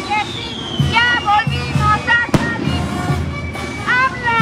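Street-march music: a drum beating about twice a second under voices singing. About two and a half seconds in, one sharp bang cuts through.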